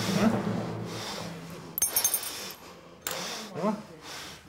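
A small hard object dropped into a glass ashtray, clinking a few times in quick succession as it bounces and settles, about two seconds in.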